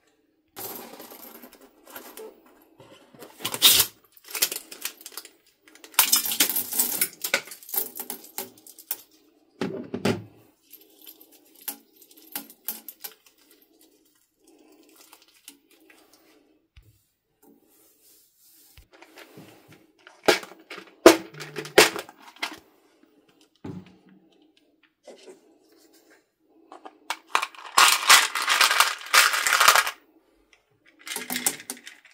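Small plastic craft pieces clicking and clattering: plastic buttons shaken out of a rubber balloon onto a tray, and near the end a dense run of clatter as red plastic hearts are scooped out of a plastic tub.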